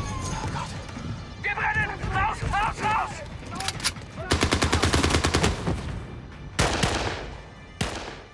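Sherman tank's turret-mounted .50-calibre machine gun firing a long rapid burst about four seconds in, then a shorter burst near the end, after some shouting.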